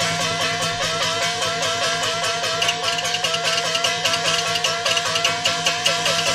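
Peking opera stage-fight accompaniment: a fast, repeated short melodic figure, about five or six notes a second, over quick percussion strokes. A higher ringing part joins about two and a half seconds in.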